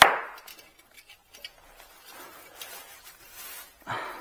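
The BMW R nineT's chrome exhaust pipe and its clamp being worked loose by hand during removal: one sharp metallic knock with a brief ring at the very start, then a few light clicks and rustling as the pipe is shifted.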